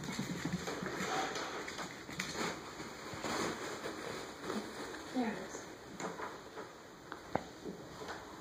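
Corgi puppy's claws clicking and scrabbling on a hardwood floor as it runs to its toy and back, with faint low voices.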